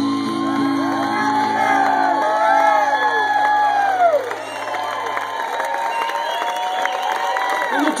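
A live blues band's closing chord rings out and fades away over about five seconds while the audience cheers and whoops.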